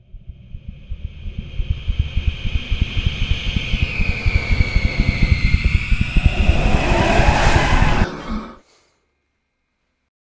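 Horror-trailer sound-design riser: a fast, dense low pulsing rumble with high whining tones that bend down and back up, growing steadily louder and then cutting off suddenly about eight seconds in.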